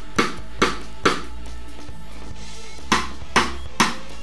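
Cross-stick strokes on a snare drum played with a Vic Firth Titan carbon-fibre 5B stick laid across the head: six sharp clicks in two groups of three, with a pause of about two seconds between them. The sound is almost like compressed, especially on a cross stick.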